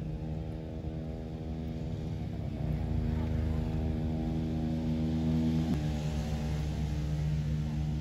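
An engine running steadily, with a small sudden change in pitch a little under six seconds in.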